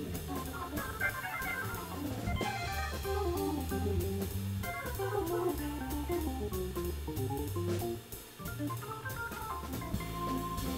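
Jazz organ trio playing a blues. A Hammond-style organ plays the melody over a bass line in the low end, with a drum kit and cymbals keeping time.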